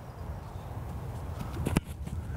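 Low wind rumble on the microphone, then, near the end, a single sharp thump of a kicker's foot striking a football on a kickoff from a tee.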